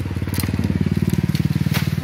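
Dry bamboo stalks and leaves crunching and crackling as someone pushes and climbs through a bamboo thicket, with a couple of sharp snaps. Under it runs a loud, rapidly pulsing low rumble.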